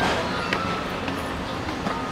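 Outdoor background noise with faint, indistinct voices of other people in the distance.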